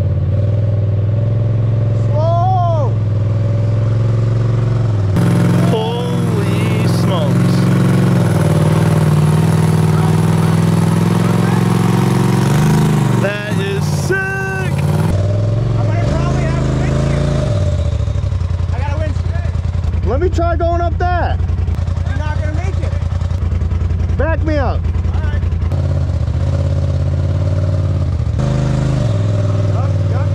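Turbocharged Polaris RZR side-by-side engine working at low revs as it crawls over a rock ledge, the revs changing a few times. Short voice calls come and go over it.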